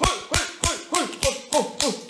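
A fast, even percussive beat of sharp hits, about three to four a second, each hit carrying a short tone that bends down in pitch.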